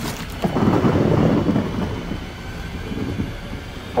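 A loud, rough rumbling sound effect that surges in about half a second in and slowly dies away.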